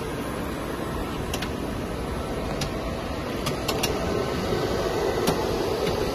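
Plastic sheet extrusion line running: a steady mechanical drone from the extruder drive and motors, a little louder in the second half, with a few sharp light clicks scattered through it.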